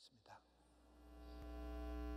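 Steady electrical mains hum with its higher buzzing overtones, fading up from silence over the first second and a half, with a couple of faint clicks at the very start.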